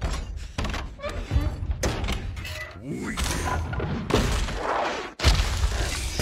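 Action-film battle sound effects for giant robots fighting: a rapid string of heavy metallic thuds and crashes, with voices crying out between them and the loudest crash just after five seconds in.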